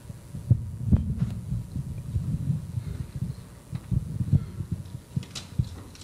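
Handling noise on a microphone: irregular low thumps and rubbing, with a few sharper knocks, about a second in and again near the end.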